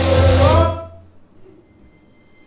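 Dance music with a heavy bass and sustained notes, stopping suddenly less than a second in, with a brief rising voice-like note as it ends; then a quiet room.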